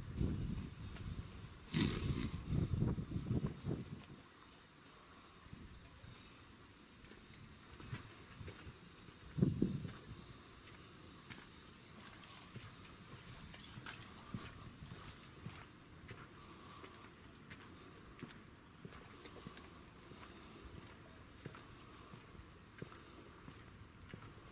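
Low rumbling wind noise buffeting the camera microphone in gusts for the first few seconds and once more briefly near the middle, then faint footsteps on a paved path over quiet outdoor background.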